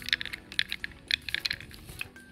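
Small hard objects clinking and clattering as they are handled, a quick irregular run of clicks.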